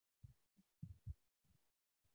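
Near silence, with about five faint, short low thumps at uneven intervals in the first second and a half.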